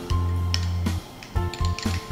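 Background music with a heavy bass note that holds for about a second and then drops away, with light percussive ticks over it.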